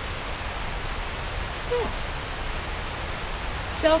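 Steady, even outdoor background noise, a rushing hiss with a low rumble underneath, with one short spoken 'yeah' about two seconds in.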